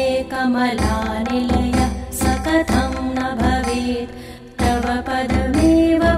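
Indian devotional music: a melody over regular drum beats, which drops away briefly about four seconds in before coming back.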